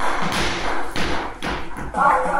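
A 3 kg medicine ball dropped onto a wooden floor, landing with several thuds.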